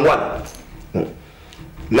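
A man's voice speaking, trailing off after the first half second, with one short voiced sound about a second in. Speech starts again right at the end.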